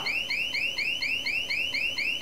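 Home burglar alarm going off: a continuous electronic siren of rapid high-pitched chirps, about four a second, each a quick rise in pitch.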